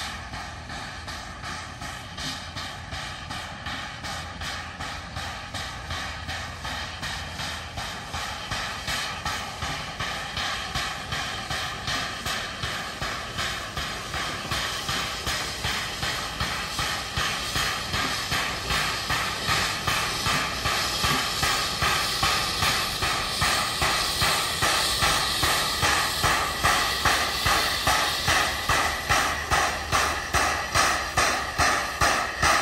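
Lima-built Shay geared steam locomotive working toward the listener, its exhaust chuffing in a quick, even beat over a steam hiss, growing steadily louder as it draws close.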